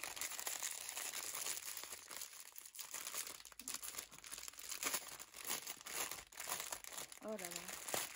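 Clear plastic bag of embroidery floss skeins crinkling in irregular bursts as it is handled.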